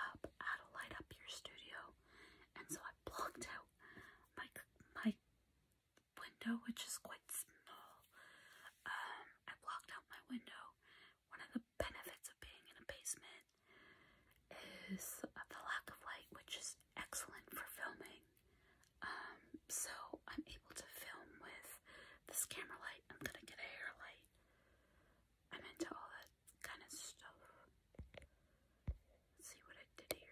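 A woman whispering in short phrases broken by brief pauses.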